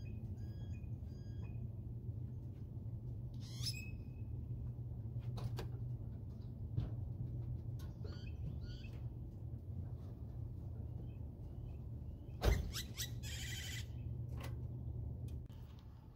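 Birds chirping and calling at intervals over a steady low hum, with a single sharp thump about twelve seconds in.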